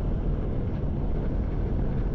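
Steady low rumble with a thin hiss above it, without speech or music.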